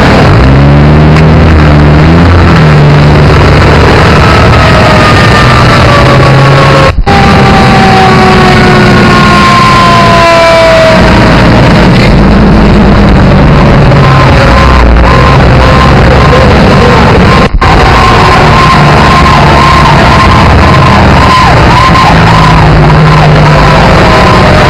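Fire engines' diesel engines and sirens, with siren tones that fall slowly in pitch as a truck passes close by and a wavering siren wail later on. The sound is heavily overloaded throughout, with two brief dropouts.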